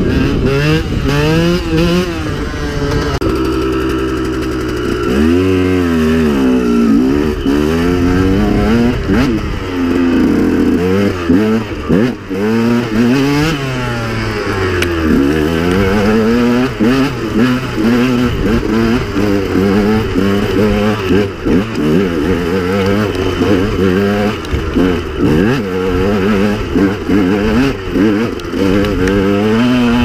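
2009 KTM 125 EXC's two-stroke single-cylinder engine under way, fitted with an aftermarket KTM Racing exhaust: the revs climb and fall again and again as the throttle is worked and gears are changed, holding a steady note for a couple of seconds a few seconds in.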